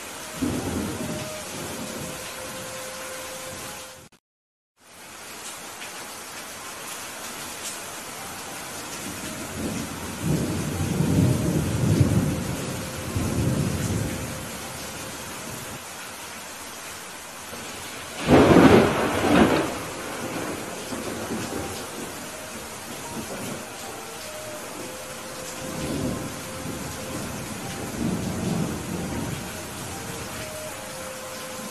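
Heavy rain falling steadily, with rolls of thunder: low rumbles about a second in, again from about ten to fourteen seconds, and near the end. A loud, sharper thunderclap comes about eighteen seconds in. The sound cuts out completely for about half a second a little after four seconds in.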